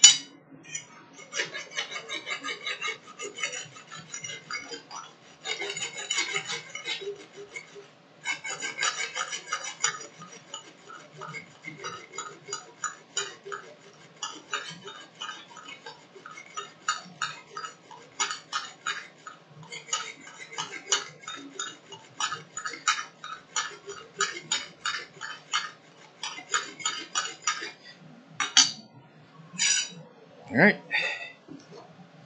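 Blacksmith's hammer striking a hot steel rasp on the anvil: sharp metallic blows, in quick runs for the first ten seconds, then a steadier run of a few blows a second with short pauses. The rasp is being drawn out to a point.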